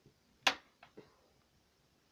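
A sharp knock about half a second in, then two fainter taps, as small props are handled and set down on a wooden desk.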